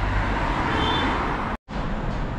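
Steady city road traffic noise, a low hum of passing vehicles, which cuts to silence for a split second about one and a half seconds in.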